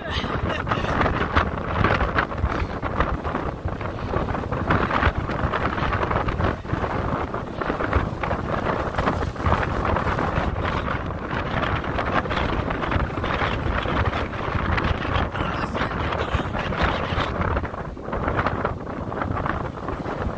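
Strong wind buffeting the microphone with an uneven, fluttering rush, over the steady roar of a rough sea breaking on a rocky shore.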